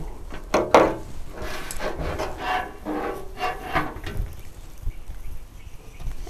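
Wire being wrapped by hand around a bunch of dried statice stems on a wire wreath frame: irregular rustling and rubbing of dry stems against wire.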